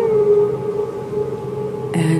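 Ambient background music: one long held tone, wavering slightly in pitch.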